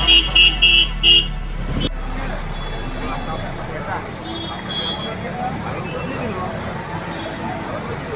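A vehicle horn beeps four times in quick succession. After that comes a steady street din of traffic wading through a flooded road, with people's voices mixed in.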